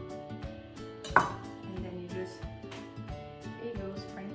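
Kitchen knife cutting fresh basil on a wooden cutting board: a few light taps and one sharp knock about a second in, over background music.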